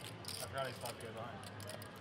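Poker chips clicking and clacking as they are handled at the table, a rapid run of small clicks, with faint voices of players talking.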